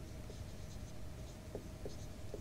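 Whiteboard marker squeaking and scratching across a whiteboard as letters are written, with a few short squeaks over a faint steady hum.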